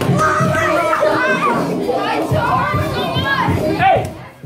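Many children shouting and calling out at once while running after a ball in a group game, their excited voices overlapping without a break.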